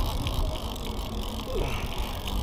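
A conventional fishing reel being cranked by hand: a steady mechanical whirring with faint ticks, over low rumble from handling the rod.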